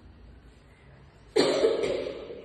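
A person coughing close to the microphone, once, about a second and a half in, dying away over about half a second.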